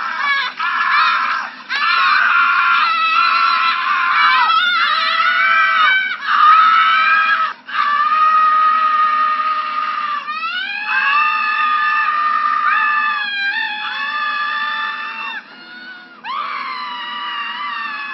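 People screaming loudly in a run of long, drawn-out screams. Some are held for several seconds, with brief breaks between them.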